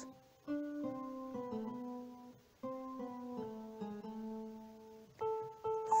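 Slow, soft meditation music played on a keyboard: sustained single notes stepping gently in pitch, in two short phrases that each fade away, with a new phrase starting near the end.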